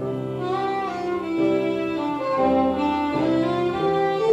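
Concertina playing an instrumental passage of a folk-song melody: a reedy tune moving over held chord notes.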